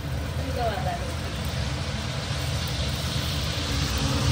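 Sel roti batter sizzling as it deep-fries in a pan of hot oil, the sizzle growing louder over a steady low hum.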